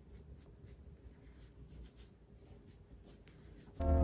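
Faint scratchy rubbing and small ticks of fingers working leave-in conditioner through short, tightly coiled hair. Near the end, background music with a beat cuts in suddenly and loudly.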